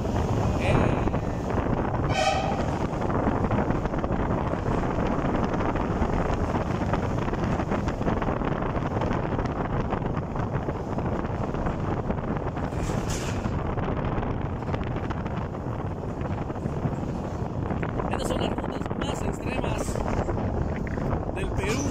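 A car driving through a narrow rock tunnel: steady engine and tyre noise throughout. A brief pitched sound comes about two seconds in.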